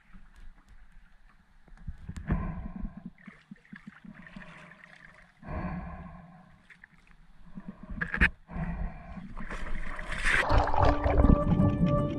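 Intermittent rumbles of wind and water on the microphone, then about ten seconds in a loud splash and a rush of bubbles as a freediver jumps into the sea. Music fades in at the end.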